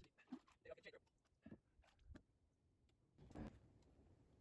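Near silence, with faint scattered clicks and light knocks and a brief faint burst of noise about three seconds in.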